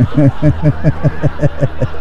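A man laughing: a rapid run of about a dozen short "ha" pulses, about six a second, each dropping in pitch, that stops just before the end.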